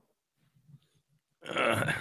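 A man burping loudly, one low, rough burp of under a second near the end, after a second and a half of near silence.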